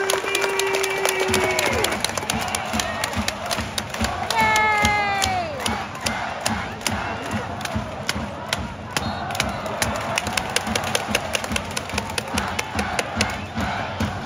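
Stadium crowd of home supporters celebrating a goal: a long, drawn-out shouted call near the start and a long falling shout about four and a half seconds in. After that comes crowd chanting over a steady, rapid beat.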